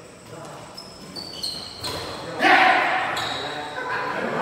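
Badminton rally in a large hall: sharp racket-on-shuttlecock hits and short high shoe squeaks on the court, then a loud shout about halfway through.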